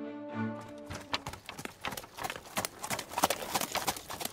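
Hooves of the horses drawing a carriage clip-clopping as it approaches, starting about a second in and growing louder. The last held notes of background music fade out at the start.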